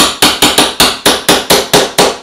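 Small hammer tapping rapidly and evenly, about four strikes a second, on the end of a metal telescope-mount axis shaft, driving the RA shaft and its new timing pulley back into the mount housing.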